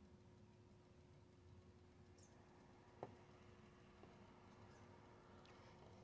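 Near silence: room tone with a faint steady hum and one faint tick about three seconds in.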